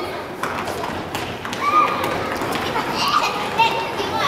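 Young children calling and shouting during play, with scattered thuds of a ball being kicked and feet running on a wooden gym floor. A few high shouts stand out around the middle and near the end.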